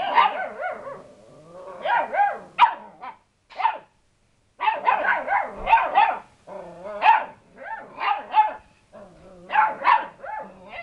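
Lurcher-cross puppies barking at a cat, in a run of short, high-pitched puppy barks with a pause of about a second just before the middle.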